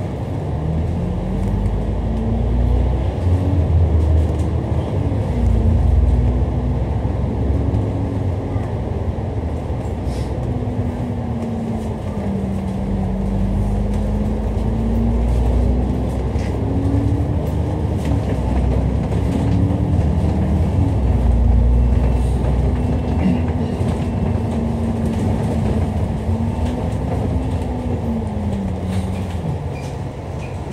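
Dennis Enviro500 MMC double-decker bus engine and drivetrain heard from inside the upper deck, with a low rumble. The engine note rises and falls several times as the bus accelerates, changes gear and eases off, dropping away near the end.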